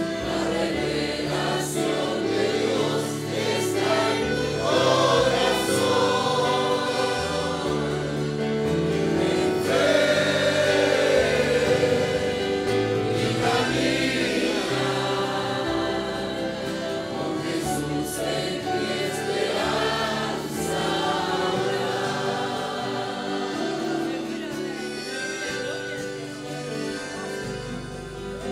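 Congregation singing a hymn together, many voices at once, with steady instrumental accompaniment holding sustained low notes.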